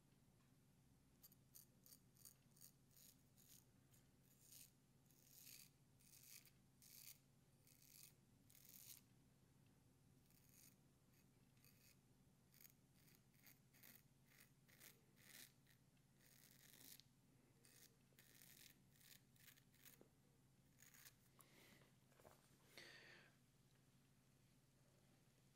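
Straight razor (a Max Sprecher 8/8 Spanish point) cutting through five days of beard growth under lather: many short, faint scraping strokes, several a second, in quick runs with brief pauses.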